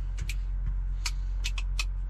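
Steady low hum of a Cummins ISX diesel engine idling, heard inside the truck's cab, with a few light, sharp clicks scattered through it.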